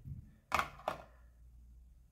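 Two short knocks, about half a second apart, as a USB charging cable and its plug are set down on a desk, over a low steady hum.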